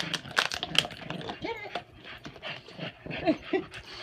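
Dogs playing with an empty plastic water bottle: the bottle clicks and crackles against the carpet and teeth over and over, with short rising-and-falling dog vocalizations mixed in.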